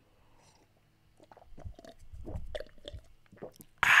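A man gulping water close to a microphone: starting about a second in, a run of soft swallows and small mouth clicks, ending with a loud "ah" of satisfaction near the end.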